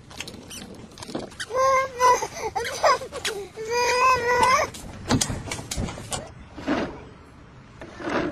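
A toddler's voice in two long, drawn-out whining cries, the first about a second and a half in and the second near the middle, among short knocks and clicks.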